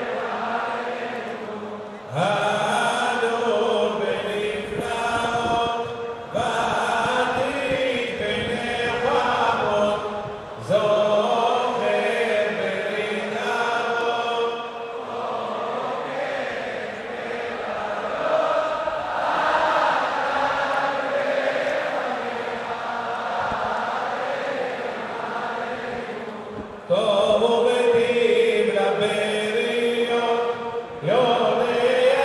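Selichot penitential prayers chanted by voices in long, gliding melodic phrases. The chant continues throughout, with several sudden jumps in loudness.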